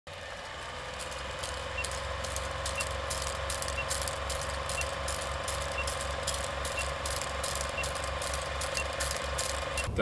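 Vintage film projector running, with a steady mechanical clatter over a low hum, and a short faint beep about once a second as a film-leader countdown ticks down.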